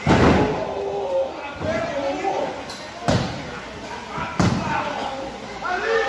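A wrestler's body slamming onto the canvas of a lucha libre ring: a loud thud at the start, then two more sharp hits about three and four and a half seconds in.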